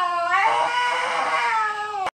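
Bull terrier howling: one long, slightly wavering howl that drifts a little lower in pitch toward the end.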